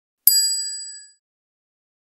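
A single bright, bell-like ding, an edited-in sound effect, struck once and fading out within about a second, with silence around it.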